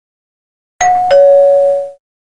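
A two-note ding-dong chime like a doorbell: a higher note about a second in, then a lower note a third of a second later, both ringing on and fading away.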